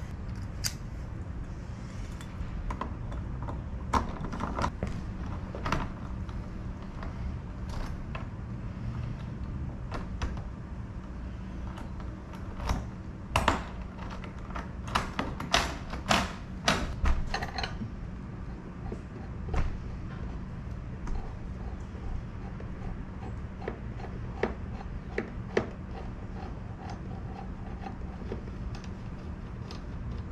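Metallic clicks and latch snaps of a newly fitted Schlage F-series tubular keyed knob being worked as the door is tried, with a quick run of clicks from about 13 to 18 seconds in. A steady low hum runs underneath.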